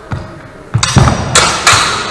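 Sharp knocks of a longsword exchange in sparring: a light knock, then four loud impacts in quick succession within about a second, echoing in a large hall.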